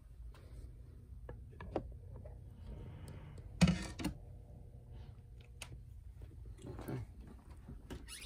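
Scattered light clicks and knocks of a tennis racket being handled in a swing-weight measuring machine, over a low steady room hum, with one louder knock about three and a half seconds in.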